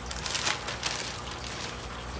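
Thin clear plastic bag crinkling and rustling in the hands as it is opened and a paper-towel-wrapped bundle of aquarium plants is pushed into it; the crackle is irregular and strongest in the first second or so.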